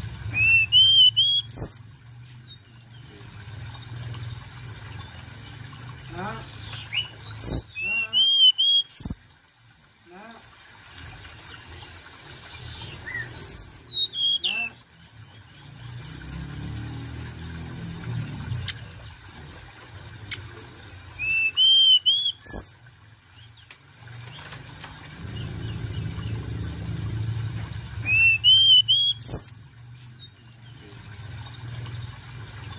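Hill blue flycatcher singing a short phrase: a quick rising whistle that ends in sharp, very high notes. The phrase is repeated five times, about every seven seconds, over a low steady rumble.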